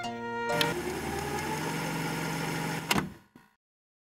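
Violin music breaks off about half a second in with a click, replaced by videotape static: steady hiss over a low hum. A sharp click comes near the three-second mark, then the sound dies away to silence.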